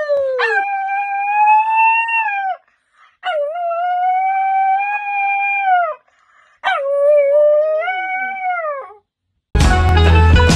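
A dog howling: three long howls with short pauses between, each holding a steady pitch and then dropping away at its end. Music comes in just before the end.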